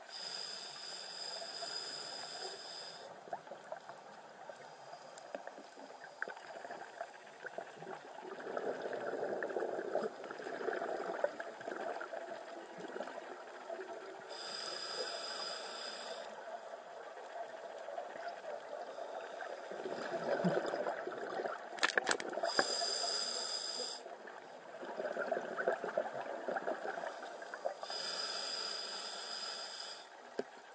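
Scuba regulator breathing heard underwater, on a slow, irregular cycle. Short inhalations with a hissing whine from the demand valve alternate with the bubbling gurgle of exhaled air. A single sharp click comes about two-thirds of the way through.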